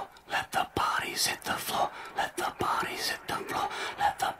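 Whispering: a voice in short, rapid, breathy phrases.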